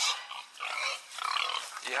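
A few short, rough calls from hungry pigs waiting to be fed.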